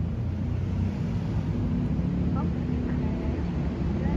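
City road traffic: a passing vehicle's engine running close by as a steady low hum.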